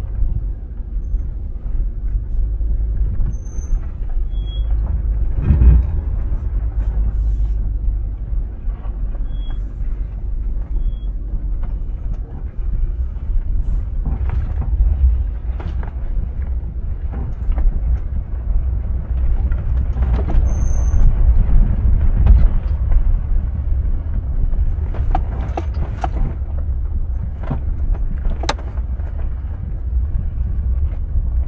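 A 2004 Range Rover HSE driving down a rutted dirt trail, heard from inside the cabin: a steady low rumble of engine and tyres, with frequent short knocks and rattles as it goes over the ruts.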